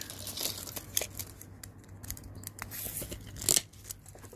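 Close scratching and rustling handling noise with a few sharp clicks, the loudest about three and a half seconds in, as a tape measure, pencil and handheld camera are handled.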